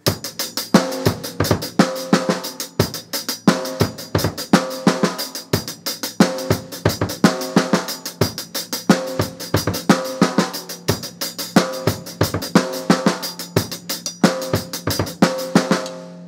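Drum kit played in a steady run of snare drum strokes, several a second, with bass drum kicks worked in: a coordination exercise that combines bass drum and snare.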